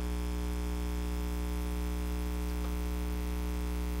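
Steady electrical mains hum with a faint buzz, unchanging throughout.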